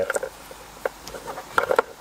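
A car wiring harness and its plastic connectors being handled and pulled: a few short clicks and rustles, bunched together near the end.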